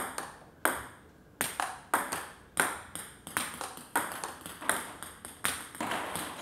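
Table tennis rally: a celluloid-type ping-pong ball clicking alternately off rubber-faced rackets and the table top, about three sharp clicks a second in a steady rhythm. It is topspin being returned with soft backhand blocks that add almost no force.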